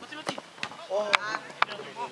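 A football being kicked on a grass pitch: several sharp knocks. A player's shout rises and falls about a second in.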